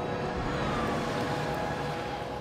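Traffic noise: a road vehicle going past, a steady rush with a faint falling whine.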